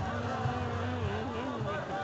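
A person's voice calling or singing in drawn-out, wavering tones amid a street crowd, over a low rumble that fades about halfway through.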